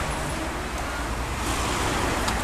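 Steady outdoor background noise with a constant low rumble, like distant road traffic.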